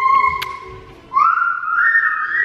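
Baby squealing in long, high-pitched notes: one rising squeal that trails off, then a second squeal starting about a second in and stepping up higher.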